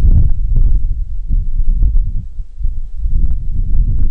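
Wind buffeting the microphone: a loud, uneven low rumble that rises and falls in gusts.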